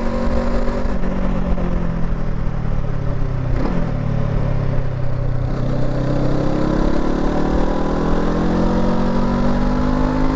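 Honda CL500's 471 cc parallel-twin engine heard from the saddle while riding, through its stock exhaust. The note eases down at first, dips quickly about four seconds in, then climbs steadily as the bike accelerates through the second half. Wind noise on the microphone runs underneath.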